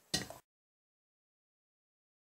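Dead silence after a short sound in the first half-second: the audio cuts out completely.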